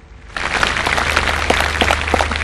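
Audience applauding, the clapping starting about half a second in.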